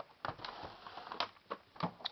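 Fireworks packs of cardboard and plastic wrap being handled: a scatter of light clicks and rustles lasting about a second and a half.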